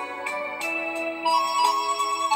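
Electronic keyboard backing music: held organ-like notes that change pitch every half second or so over a steady percussion beat.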